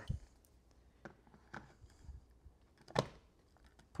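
A few light plastic clicks and taps as a Google Nest Thermostat display is handled and pressed onto its wall base, with one sharper click about three seconds in.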